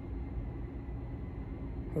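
Steady low rumble with a faint hiss, even background noise with no distinct event.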